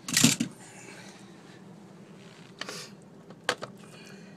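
Hand tools and parts being handled: a loud clatter at the start, then a few lighter clicks and knocks.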